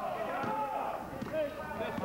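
Several voices shouting over one another during a basketball game, with a couple of knocks of the ball bouncing on the hard court.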